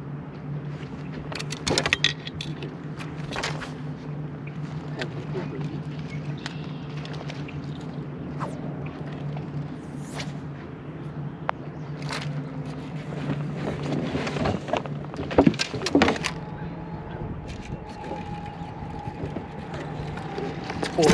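Steady low hum of a boat motor running, with scattered knocks and clicks from fishing gear and footsteps on the boat's deck, the loudest pair of knocks about three-quarters of the way in.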